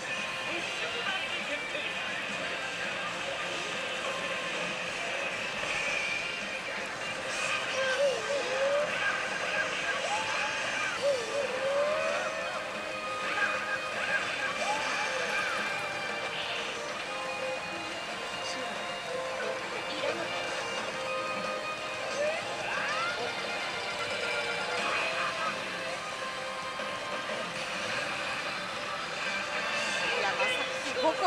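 Pachinko-hall din: pachislot machine music and electronic sound effects running continuously at a steady level, with voice-like clips and melodic glides scattered through it.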